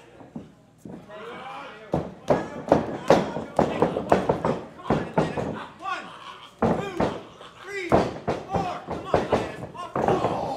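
Shouting voices in the crowd and at ringside, mixed with thuds and slams of wrestlers hitting the ring canvas.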